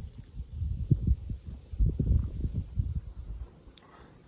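Men gulping lager from aluminium cans: irregular low, soft thuds of swallowing, easing off near the end.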